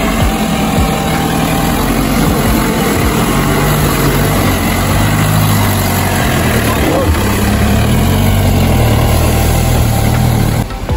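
Mahindra Bolero's engine revving under load while the SUV is stuck in deep mud, its wheels spinning and throwing mud. The engine note rises and falls several times and is loudest near the end.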